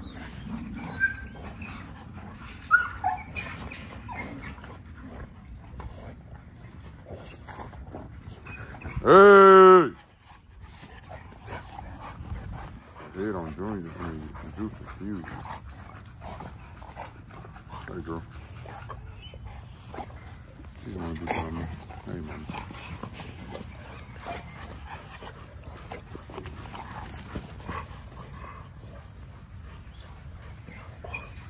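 XL American Bully dogs and puppies play-fighting, with scuffling throughout. There is one very loud, drawn-out cry about nine seconds in, and shorter wavering cries a few seconds later and again near the twenty-second mark.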